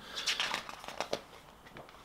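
Paper rustling and crinkling as the box set's booklet is handled, a few soft rustles in the first second or so.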